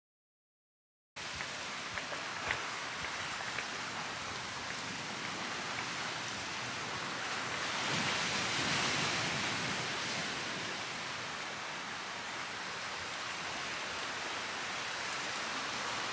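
About a second of silence, then steady rushing outdoor ambience that swells a little in the middle, with a couple of faint clicks.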